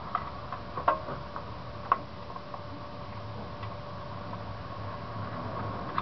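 A few sharp clicks and taps from hand work on a small lawnmower engine as the carburetor cover is fitted and screwed back on, three of them in the first two seconds. After that there is only a faint steady hum.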